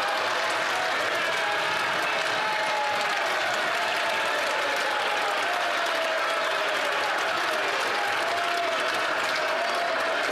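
Steady applause from a chamber full of legislators clapping, with voices calling out over it.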